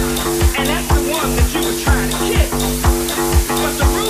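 Techno played in a DJ mix: a steady four-on-the-floor kick drum at about two beats a second over sustained bass notes, with a dense, noisy high layer on top.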